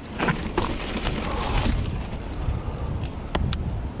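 Giant Trance 29er mountain bike riding down a steep dirt drop: a steady low rumble of tyres over the ground and the bike, with two sharp knocks near the end.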